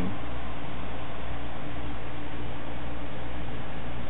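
Steady whirring noise with a low hum, as from an air-cooled desktop PC's fans running while the CPU is held under a Prime95 stress test.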